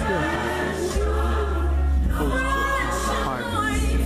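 A gospel song with choir singing over a heavy, steady bass.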